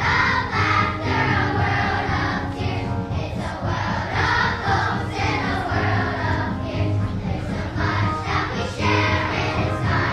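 Children's choir singing with instrumental accompaniment.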